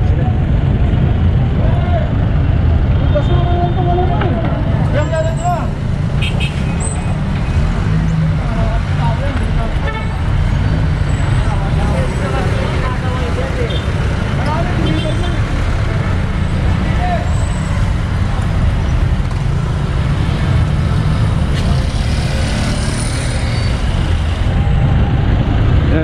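Busy city street traffic: a steady low rumble of vehicles, with scattered voices of people close by.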